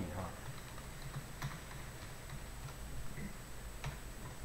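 Computer keyboard keys tapped in faint, scattered clicks as a message name is typed, the clearest click about a second and a half in and another near the end.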